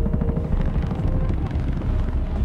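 Helicopter rotors beating in a fast, steady chop over a low rumble.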